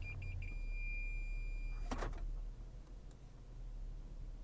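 Lexus RX 350's rear parking-sensor (Park Assist) warning beeping rapidly, then merging into one continuous high tone about half a second in, which signals an obstacle very close behind the reversing car. The tone cuts off just before two seconds in, with a short knock.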